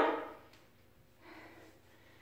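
Near silence: quiet room tone after a word trails off, with one faint, soft sound a little past halfway.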